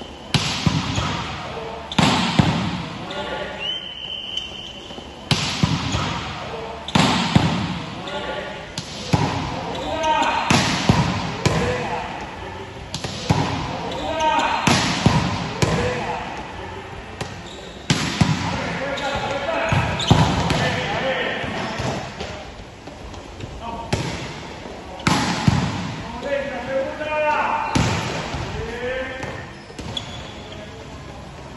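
Volleyball drill in an echoing gym: a volleyball struck and bouncing over and over, a sharp hit every one and a half to two seconds, with sneaker squeaks on the court floor between them.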